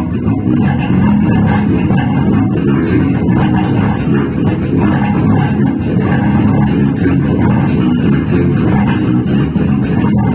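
Electric bass guitar playing a busy jazz-funk groove: a continuous run of quick plucked notes with no pauses.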